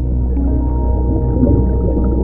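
Background music: slow ambient music with a steady low drone and long held tones.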